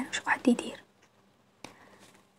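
Speech only: a soft voice speaking French for under a second, then a pause broken by a single faint click.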